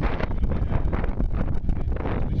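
Wind buffeting the microphone outdoors: a loud, uneven low noise with no speech over it.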